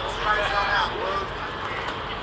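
Ballpark crowd ambience: scattered spectators talking over a steady background hum.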